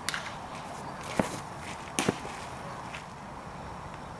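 A few sharp leather pops of a baseball smacking into a glove: one near the start, one a little after a second in, and a quick double about two seconds in.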